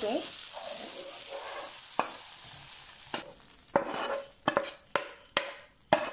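Chopped onion, tomato and garlic sizzling in a nonstick frying pan while a perforated steel skimmer stirs it. The sizzle fades, and from about three seconds in the skimmer knocks and scrapes against the pan roughly twice a second as the mixture is scooped out.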